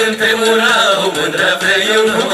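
Male vocal trio singing a Romanian folk song through a PA, holding drawn-out wavering notes over amplified folk accompaniment.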